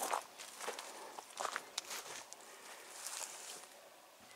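Faint, irregular footsteps on brick pavers as the person filming walks around.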